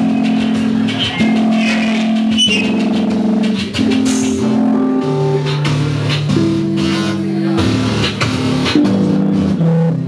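Live punk-electronic band playing an instrumental stretch: held low notes stepping in pitch about every second over a steady drum beat.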